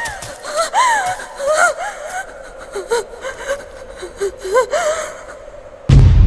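A woman's gasping, sobbing cries: short, high, wavering vocal sounds that come and go and die away about five seconds in. A loud, low rumble of music cuts in right at the end.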